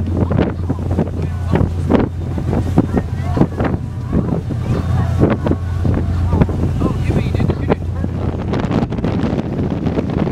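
A fast passenger boat's engines drone steadily at cruising speed, with wind buffeting the microphone and water rushing in the wake.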